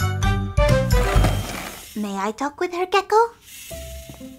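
Cartoon background music that stops about a second and a half in, followed by a few short, high voice-like calls that slide up and down in pitch.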